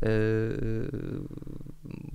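A man's drawn-out hesitation sound, a held 'eee' while he searches for the next word, which after about a second turns into a low creaky, rattling voice before fading out.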